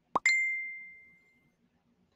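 Electronic notification sound: a quick rising blip followed by a single bell-like ding that rings out and fades over about a second.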